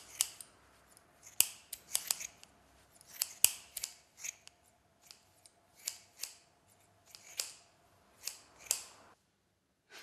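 Scissors snipping through hair: sharp, crisp snips at irregular intervals, often two or three in quick succession, stopping about nine seconds in.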